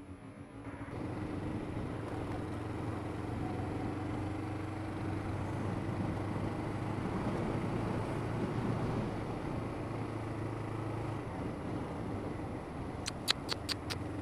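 Motorcycle engine pulling away and running at steady revs, with wind and road noise on the helmet-camera microphone. The engine note falls back about eleven seconds in, and a quick run of sharp clicks comes near the end.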